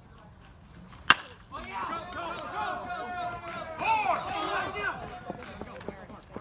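A baseball bat hits a pitched ball with one sharp crack about a second in, followed by several people shouting at once.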